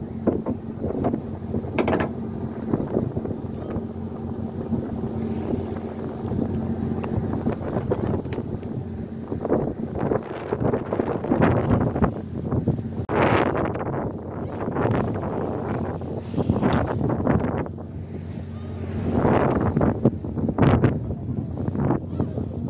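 A fishing boat's motor humming steadily, with gusts of wind on the microphone and rushing water along the hull coming and going in several surges.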